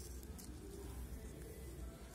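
Faint snipping of large steel scissors cutting through a folded plastic carry bag, with a steady low hum underneath.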